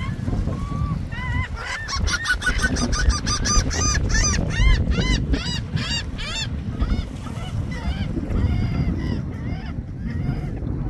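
Gulls calling: a rapid run of short, high, arched calls, building about a second in, loudest through the middle and trailing off near the end. Wind rumbles on the microphone throughout.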